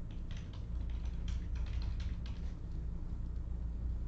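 Typing on a computer keyboard: irregular key clicks, thickest in the first couple of seconds and sparser after, over a steady low hum.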